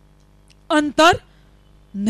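A woman speaking one short word into a microphone about a second in, amid pauses that hold only a faint steady hum.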